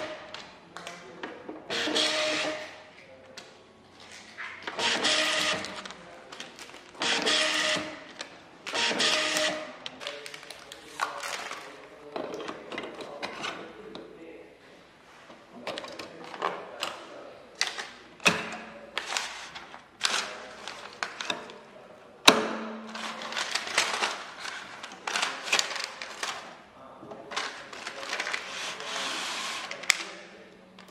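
Label backing paper rustling and sliding as it is threaded by hand through a label printer's rollers, dispenser and rewinder. It comes in a series of bursts about a second long, with one sharp click about two-thirds of the way through.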